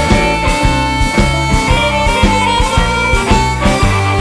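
Blues band playing, a harmonica holding long notes over a steady, pulsing bass line.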